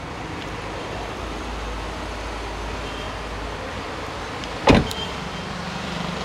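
Car door shut once with a single loud thump near the end, over a steady low rumble.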